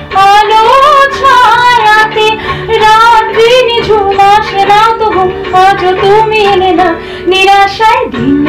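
A woman singing a song solo, with long held notes that waver in pitch and short breaths between phrases, over a low, steady instrumental accompaniment.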